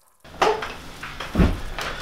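Quiet room tone broken by a few light knocks and bumps of a person shifting at a wooden table, the loudest a dull thump about a second and a half in.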